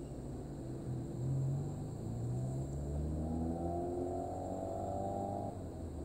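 Car engine heard from inside the cabin, pulling under acceleration: its pitch climbs steadily for several seconds, then drops away suddenly near the end as the revs come off.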